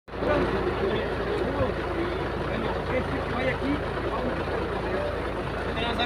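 Several men talking indistinctly over one another, with a steady low engine rumble underneath.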